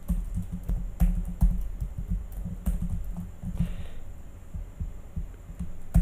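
Typing on a computer keyboard: a quick, irregular run of keystrokes heard mostly as low thuds.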